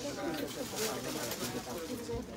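Indistinct background voices, low talk with no clear words.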